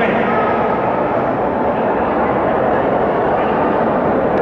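Loud, steady crowd noise: many voices at once filling a large hall, with no single speaker standing out.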